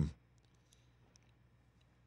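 Near silence: studio room tone with a few faint, small clicks.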